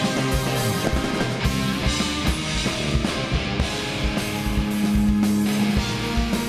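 Rock band playing live: electric guitar over a drum kit, with a sustained low note held for about a second and a half around four seconds in.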